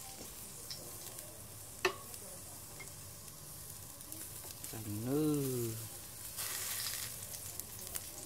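Pork slices sizzling on the rack of a tabletop charcoal grill, a faint hiss at first that becomes much louder a little over six seconds in as the meat is turned with chopsticks. A single sharp click comes near two seconds in, and a short hummed voice sound rising and falling in pitch about five seconds in.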